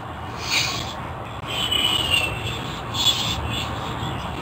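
Scratchy rubbing of a hand against the face close to a webcam microphone, coming in a few short bouts, over a steady low hum.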